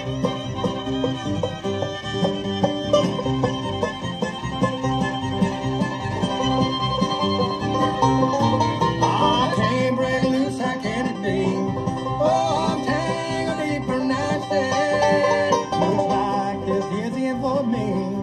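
A live bluegrass band playing an instrumental break: rolling banjo and strummed acoustic guitar over bass, through a small PA. About halfway through, a lead line with sliding notes comes in over the rhythm.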